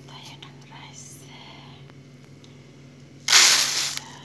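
Uncooked rice tipped into a bowl: a short, loud rush of grains near the end. Before it, a faint whispering voice.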